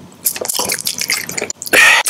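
Close-miked wet mouth sounds of a round candy being squished between the teeth: a run of small wet clicks and squishes. A louder, harsher burst of noise comes near the end.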